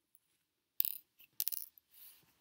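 Two brief clinking rattles about half a second apart, from small hard objects being handled.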